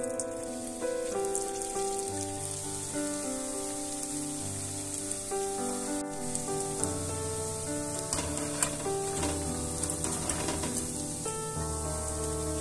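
Hot oil sizzling as balls of grated potato fry in a pan, with a few small crackles, over background music playing a melody.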